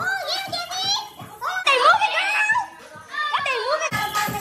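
Several excited voices shouting and calling out over music with a steady beat.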